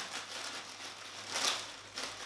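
Clear plastic packaging bag crinkling and rustling as hands work it open, with a sharper rustle about a second and a half in.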